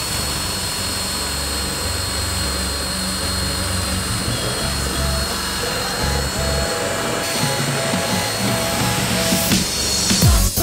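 Cordless drill spinning an abrasive attachment against the sheet-metal roof edge at the windshield, scrubbing off rust and old paint with a steady high whine. Background music plays along with it.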